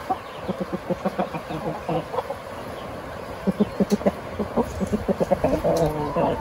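Domestic chickens clucking back and forth in a series of short clucks that grow denser in the second half, with a longer pitched call near the end. These are companion calls between flock members, checking in to signal that all is well.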